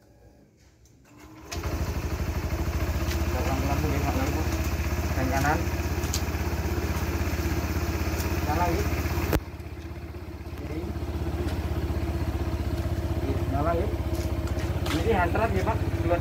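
Honda PCX 160 scooter engine starting suddenly about a second and a half in and then idling steadily. The level drops sharply about nine seconds in and builds back up over the next couple of seconds.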